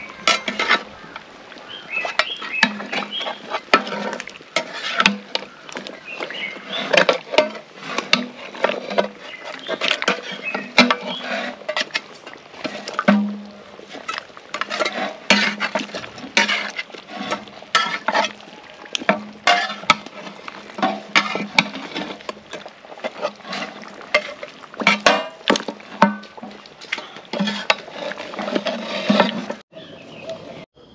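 A metal ladle stirring chunks of beef bone in a metal cooking pot, scraping and clinking against the pot's sides in quick, irregular knocks, with music playing underneath.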